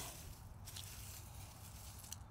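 Faint footsteps and rustling on garden ground, with one small tick about a third of the way in.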